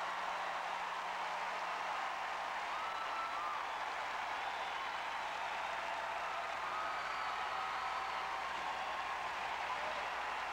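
Large auditorium audience applauding and cheering at the end of a stage performance, a steady wash of clapping with a few high whoops above it.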